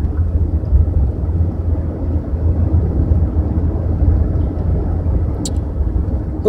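Inside a moving car's cabin: a steady low rumble of road and engine noise while driving, with a brief click about five and a half seconds in.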